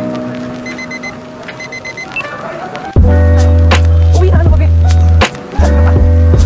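Background music: soft sustained synth notes, then about three seconds in a loud, bass-heavy passage of held chords with sharp percussive clicks.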